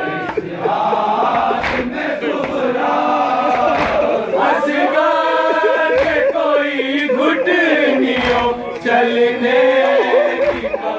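A male noha reciter sings a mournful chanted lament into a microphone, and a crowd of men chants along with him. A few dull thumps sound among the voices.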